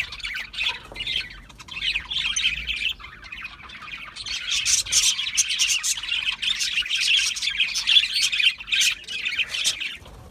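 A flock of budgerigars chattering and squawking, a dense high twittering that dips for a second or so about three seconds in and then picks up louder again.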